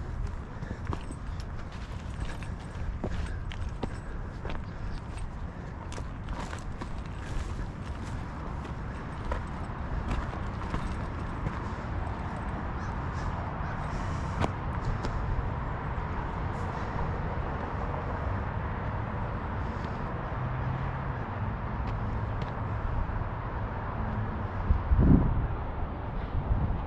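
Footsteps on a dry grassy dirt trail, irregular crunches mostly in the first half, over a steady low rumble of wind on the microphone, with a louder bump about a second before the end.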